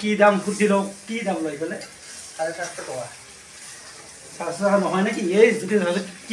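Food frying and sizzling in a metal pan on a portable gas stove while a spatula stirs it, with men talking over it.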